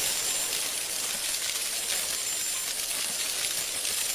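An edited-in sound effect of steady, bright jingling, shimmering noise, like shaken bells or chimes.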